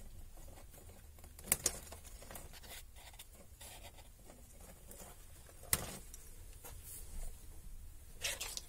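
Small electronic parts and wires being handled on a cluttered workbench: light rustling with scattered sharp clicks, two quick ones about a second and a half in and another near six seconds, over a faint low hum.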